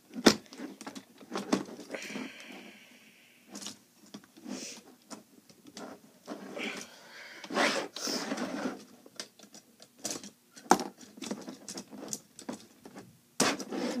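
Lego plastic parts clicking, knocking and rattling as a stiff section of a built Lego model is worked loose and pulled off. The sharp clicks come irregularly throughout.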